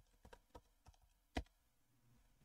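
Faint keystrokes on a computer keyboard as a password is typed at a sudo prompt: about six separate key clicks, one louder press about one and a half seconds in.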